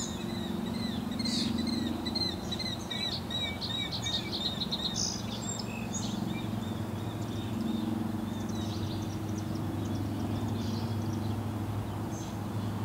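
Small birds chirping in quick series of short high notes, busiest in the first half and fainter later, over a low steady hum.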